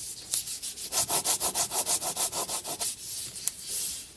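Pen tip scratching across paper in rapid short strokes, about eight a second, for a couple of seconds.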